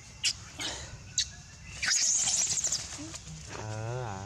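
Short, high animal chirps, twice in the first second and a half, then a dense high buzzy trill about two seconds in. Near the end comes a low, drawn-out voice-like sound that falls in pitch.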